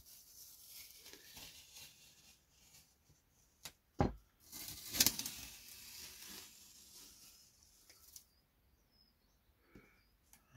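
Masking tape being peeled off a painted board: a noisy tearing sound in two spells, the second and louder one starting about halfway through and stopping suddenly near the end.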